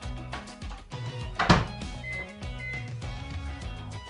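Background music throughout; about a second and a half in, a microwave door shuts with a loud thunk, followed by two short high beeps from the microwave's keypad.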